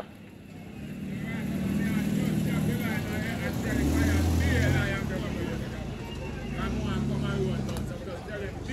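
Motor vehicle engines running by on the street, the low hum swelling to its loudest about four seconds in, easing off, then rising again near the end.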